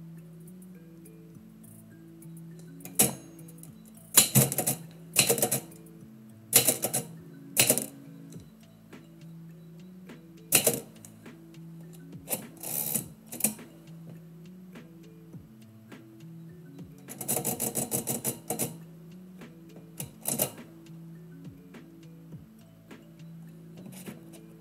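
Manual typewriter keys striking the platen in short scattered groups of clacks, with a quick run of a dozen or so rapid, evenly spaced strikes about two-thirds of the way through.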